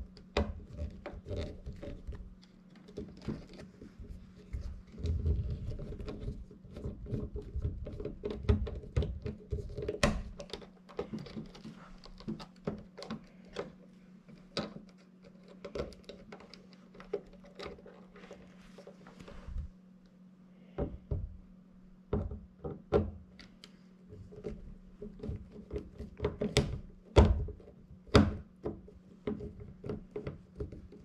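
Irregular clicks, taps and knocks of a screwdriver and fingers working the plastic base and terminal screws of a wall thermostat while it is wired, over a steady low hum.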